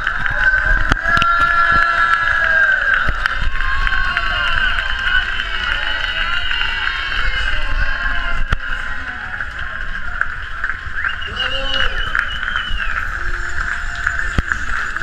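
A dense crowd of spectators cheering, shouting and clapping, many voices at once.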